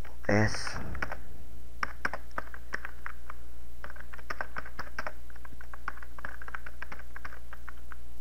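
Typing on a computer keyboard: a run of quick, irregular keystrokes from about a second in, over a steady low hum.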